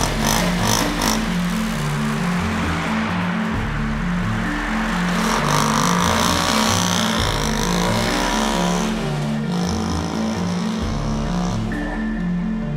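A motor scooter's engine revs up and pulls away about halfway through, over background music with a steady stepped bass line.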